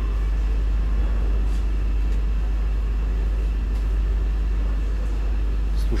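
Steady low rumble of a river cruise ship's engines and machinery, even in level, while the ship rises in a lock chamber.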